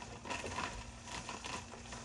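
Crinkle-cut carrot slices shaken out of a plastic bag and dropping into a painted metal colander: a light, irregular patter of small clicks, with the plastic bag rustling.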